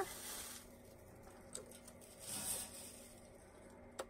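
Faint rustling and crinkling of packing material being pulled out of a cardboard box, in two short bursts, with a light tap about a second and a half in.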